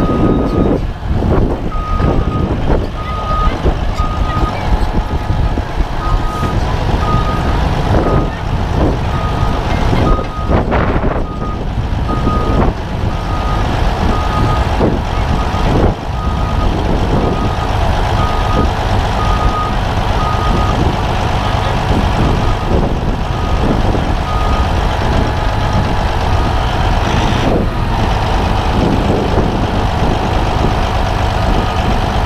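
Caterpillar D8T crawler dozer's diesel engine running close by, while a heavy machine's reversing alarm beeps at a steady pace, about three beeps every two seconds, and stops about two-thirds of the way through.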